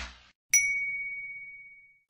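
A single bright bell-like ding about half a second in, one clear ringing tone that fades away over about a second and a half, used as an intro chime.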